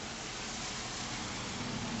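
Steady rain falling, an even hiss.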